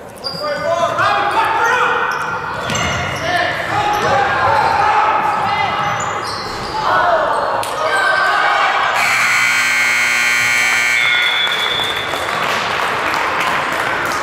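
Basketball game in a gym: voices shouting and a basketball bouncing on the hardwood court, with a steady buzzing tone lasting about two seconds just past the middle.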